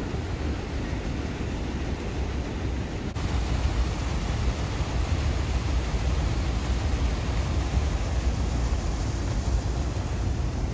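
Water pouring over a low concrete weir in a steady rush. It gets louder about three seconds in, when the sound comes from closer to the falling water.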